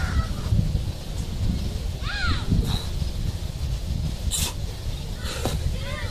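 Wind buffeting the microphone in an uneven low rumble, with a single bird call about two seconds in and a few faint clicks near the end.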